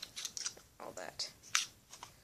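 Lego Power Functions battery box handled in the hands: a series of sharp plastic clicks and knocks, several in two seconds.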